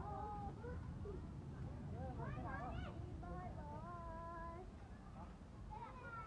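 Voices of other people talking in the background, some of them high-pitched.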